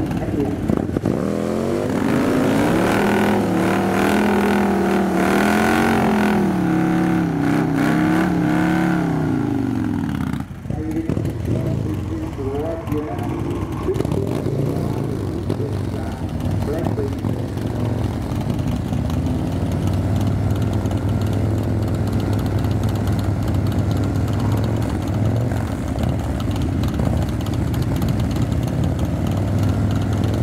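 Harley-Davidson cruiser motorcycle revving up and down repeatedly in the burnout area. About ten seconds in it drops off briefly, then settles to a steadier low-pitched idle and light blips as the bike stages at the start line.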